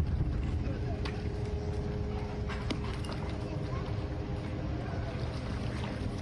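A steady motor hum with voices in the background and a few sharp clicks.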